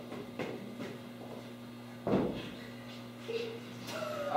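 Quiet stage room with a steady low hum, a few faint knocks, and one louder thump about two seconds in, from a performer miming and moving on a stage floor.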